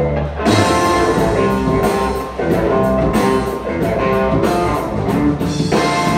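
Live electric rock/blues band playing an instrumental passage: a hollow-body archtop electric guitar through an amplifier leads over a drum kit. After a brief dip at the start, the band comes back in about half a second in and plays on steadily.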